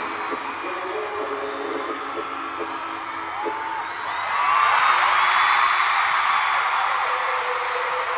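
Concert crowd of fans screaming and cheering, many high voices whooping over one another, swelling louder about four seconds in.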